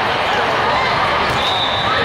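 Sports-hall din during a volleyball rally: many overlapping voices from players and spectators, with the thuds of balls being played on the court.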